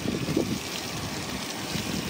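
Steady hiss of water running and splashing onto concrete paving, with some wind.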